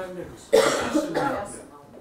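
A person coughs once, starting abruptly about half a second in and dying away within a second.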